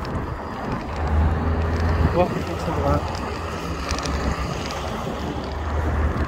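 Road traffic passing through a junction: car engines and tyres making a steady low rumble that swells twice as vehicles go by, with wind buffeting the microphone.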